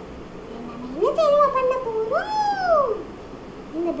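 Cat meowing: a drawn-out call beginning about a second in, ending in a long meow that rises and then falls in pitch.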